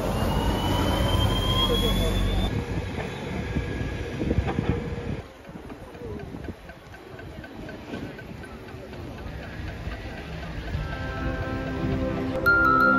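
A city bus moving off close by, with a low rumble and a rising whine from its drive for the first couple of seconds, then quieter street traffic and passers-by chatter. Music comes in near the end.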